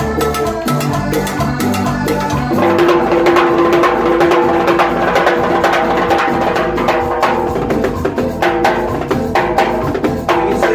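Live sampuesana band music driven by timbales, cowbell and wood block struck with sticks over keyboard. About two and a half seconds in, the bass line drops out and a single held note carries on under the percussion.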